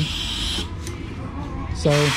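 A short hiss of air, about two-thirds of a second long, as the valve spring compressor over the cylinder head is worked, followed by a faint steady low hum.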